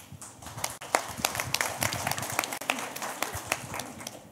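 Handling noise from a live handheld microphone: irregular knocks, bumps and rustles as it is taken from one hand, carried and passed to another person.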